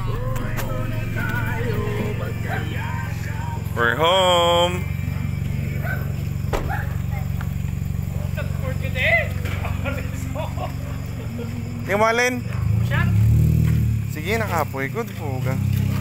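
People's voices calling out, with short gliding sung or chanted phrases, over a steady low hum. A long drawn-out call comes about four seconds in and another near twelve seconds.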